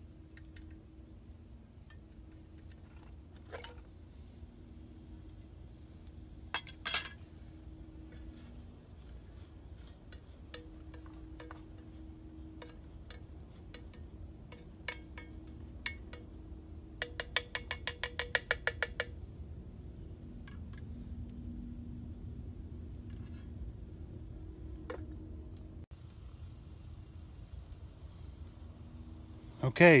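Metal utensil clinking and scraping in an aluminium mess tin as vegetables are stirred on a camp stove: scattered light clinks, with a quick run of rapid taps, about eight a second, about halfway through.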